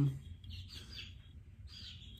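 Faint, high peeping of baby chicks: a few short chirps spread through the two seconds.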